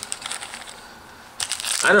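Cellophane candy wrapper crinkling in the hands, a run of short crackly clicks about a second long, then more crinkling just before speech.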